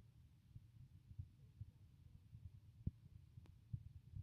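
Near silence: faint room tone with an uneven low rumble, soft low thumps and a sharp click a little under three seconds in.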